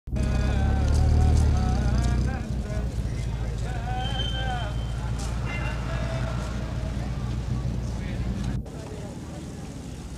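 Busy street sound: people's voices talking over a low vehicle engine rumble that is loudest in the first two seconds or so. The sound drops off abruptly about eight and a half seconds in.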